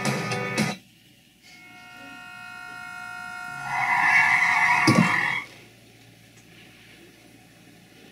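Car-crash sound effect from a short film's soundtrack, heard through computer speakers. The guitar music cuts out, a steady horn-like blare swells louder for a couple of seconds, and a loud tyre screech joins it. A thump comes about five seconds in, and the sound cuts off abruptly.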